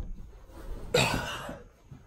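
A man coughing once, about a second in, after a short low bump at the very start.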